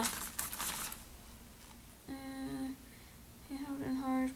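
A woman humming two short, steady, level-pitched "mm"s while thinking, the second running into her next words, with a light rustle of things being handled in the first second.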